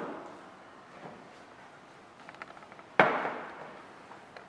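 Glassware knocked down onto a hard tabletop: a sharp knock at the very start and a louder one about three seconds in, each with a short ringing decay, with a few light clicks of glass being handled just before the second.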